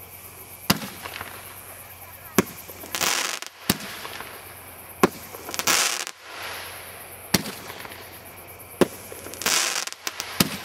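Consumer 1.4G aerial fireworks going off in a sequence: six sharp bangs spaced about one and a half seconds apart, with three short hissing rushes among them.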